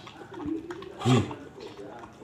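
A man's voice calling out a short word once, about a second in, with a softer call just before it.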